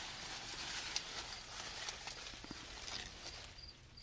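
Dry, senescing corn leaves and stalks rustling and crackling as a person pushes past them between the rows. Crickets chirp in short, evenly spaced pulses, mostly near the end.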